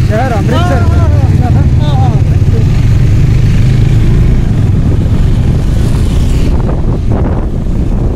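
Wind buffeting the microphone on a moving motorcycle, over the low drone of the bike's engine. A man's voice calls out briefly in the first two seconds or so.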